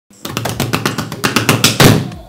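A fast drum roll, about nine hits a second, growing louder to a final loud hit at the end: a short drum build-up opening the video.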